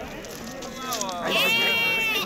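A sheep or lamb bleating once, a high-pitched call held for about a second, starting a little past the middle, over a low murmur of market voices.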